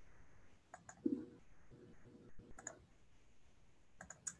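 Quiet computer mouse clicks in two pairs, one about a second in and one near three seconds. A brief low sound follows just after the first pair.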